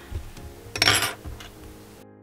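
A short rustle about a second in, with a few soft thumps around it: a crocheted acrylic-yarn hat being picked up and handled.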